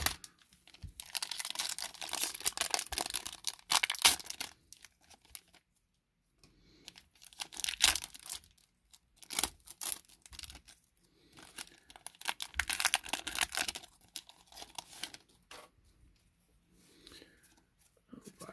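Foil wrapper of a Magic: The Gathering booster pack being torn open and crinkled by hand, in three crackling bursts of a few seconds each with short pauses between.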